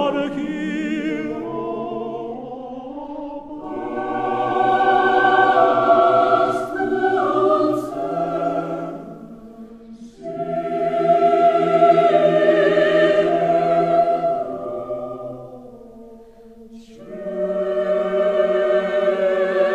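A choir singing a slow Armenian choral song in long, sustained phrases that swell and fade, dipping between phrases about ten seconds in and again shortly before the end, where a new phrase enters.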